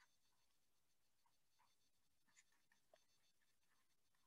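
Near silence, with a few very faint stylus taps on a tablet screen as handwriting is written.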